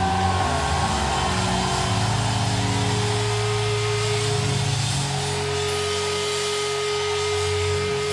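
Live rock band holding a sustained drone of distorted guitar and bass without singing. A steady held tone enters about three seconds in, and the deep bass note under it drops away soon after.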